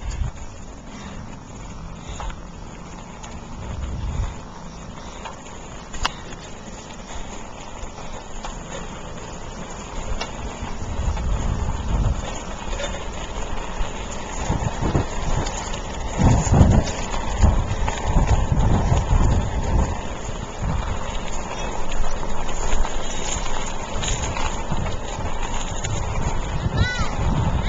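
Wind noise buffeting the microphone, with tyre and handling rumble, while riding a Stingray bicycle along a paved street. It gets louder and gustier about ten seconds in.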